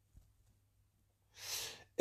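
Near silence, then a man's short in-breath, about half a second long, near the end, just before he speaks.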